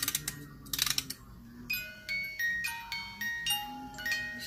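Lenox porcelain doll music box being wound, a quick run of ratchet clicks about a second in, then its comb plucking out a tinkling melody note by note.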